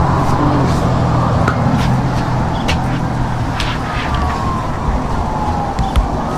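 Steady outdoor background noise with a low rumble and a few light clicks; about four seconds in a siren starts to wail, its pitch falling.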